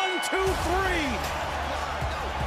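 Wrestling ring bell ringing out the end of the match after the pinfall, its tone dying away about half a second in, as music with a steady low bass starts up under voices.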